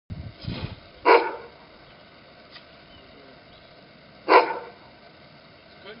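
Afghan hound barking: two loud single barks about three seconds apart, with a softer, lower noise just before the first.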